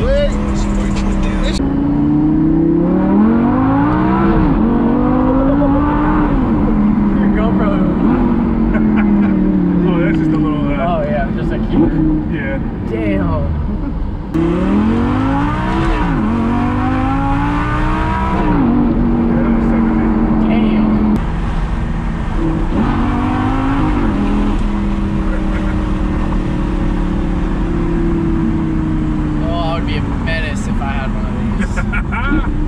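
Lamborghini Gallardo's V10 engine heard from inside the cabin, revving hard through the gears again and again: each time the pitch climbs, breaks off as it shifts, and climbs again, then eases back off the throttle.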